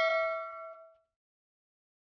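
Bell-like ding sound effect of a subscribe-button animation, ringing out and fading away within about the first second.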